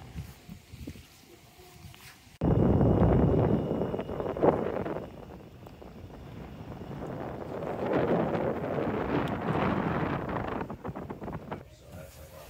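Wind buffeting the microphone, coming in suddenly about two and a half seconds in and rising and falling in gusts before dropping away near the end.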